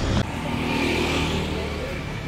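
A road vehicle's engine running as it passes close by on the street: an even hum that eases off slightly near the end, after a short burst of noise at the very start.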